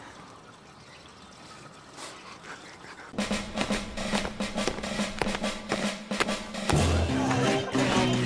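Background music: after a quiet start, a rapid snare-drum pattern comes in about three seconds in, and bass and other instruments join near the end, louder.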